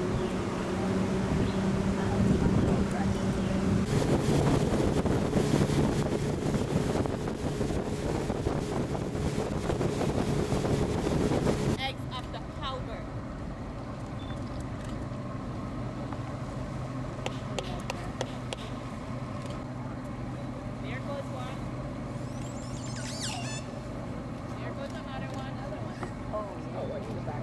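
A tour boat's motor running fast with rushing wind and water for about twelve seconds, then dropping suddenly to a quieter steady hum. A short high chirping comes near the end.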